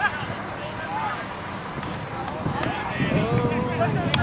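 Soccer players calling and shouting to each other across the pitch during play, the voices distant and indistinct, with one short sharp knock about two and a half seconds in.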